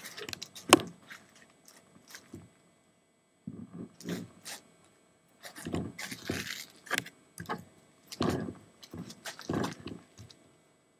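Handling noise from a camera being turned and moved by hand: a sharp click about a second in, then scattered scrapes and knocks with quiet gaps between them.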